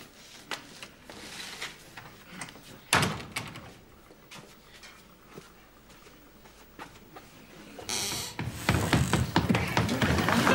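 Soft scattered knocks and one louder thump about three seconds in, followed by a brief hiss near the end.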